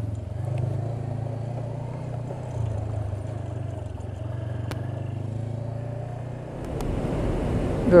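Motorcycle engine running steadily at low riding speed, heard from the bike-mounted camera. Near the end a low rumble of wind and road noise builds as the bike picks up speed.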